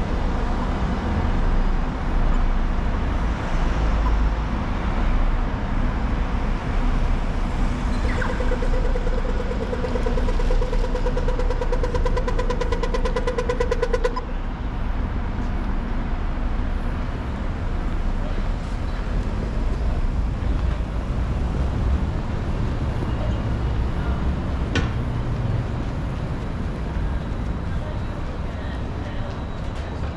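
City street traffic: cars passing and a steady road rumble. In the middle, a steady pitched buzz with rapid ticking sounds for about six seconds and cuts off suddenly.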